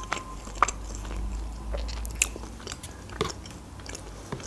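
A person chewing a mouthful of food close to the microphone, with a handful of sharp wet mouth clicks and smacks.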